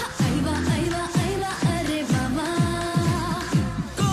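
Bollywood film song: a sung melody over a pop dance beat, with deep electronic drum hits that drop in pitch about twice a second.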